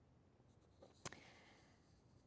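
Near silence: room tone, with one brief click about a second in.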